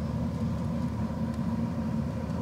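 Steady low rumble of an irrigation water pump's engine running.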